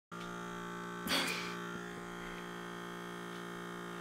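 Small battery-powered suction pump of a Dermasuction pore vacuum running with a steady hum while its tip is held against the skin, with a short hiss about a second in.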